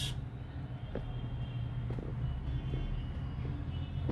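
Steady low background rumble with a few faint, short ticks scattered through it.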